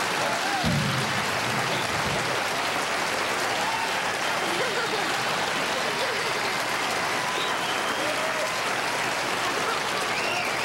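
Studio audience applauding steadily, with scattered voices calling out over it and a low thud just under a second in.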